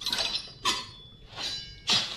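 Sound effects from an animated film's soundtrack: about four short clinks and knocks, spaced roughly half a second apart, one with a brief ring after it.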